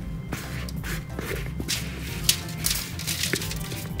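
Background music with a steady melody, over a few soft taps and crackles of crumbly cookie-crust mixture dropping onto foil lining a baking pan.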